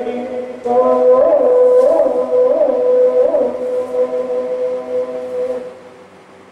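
Chanted singing from an improvisation on a Khorku death song: one long held note with four quick upward turns in pitch, fading out shortly before the end.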